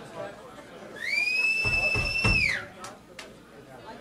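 A loud, high whistle, the kind a listener gives between songs at a rock show: it starts about a second in, slides up, holds one steady pitch for about a second, then drops off.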